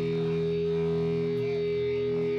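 Distorted electric guitars from a live hardcore punk band holding a sustained, ringing chord, steady and loud with no drum hits.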